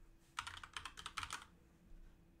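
Computer keyboard typing: a quick run of keystrokes that starts about half a second in and lasts about a second, as a single word is typed.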